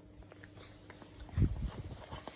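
Two puppies scrambling and nuzzling on a person's lap against a jacket: small scattered scuffs and ticks, with a cluster of dull low thumps about one and a half seconds in.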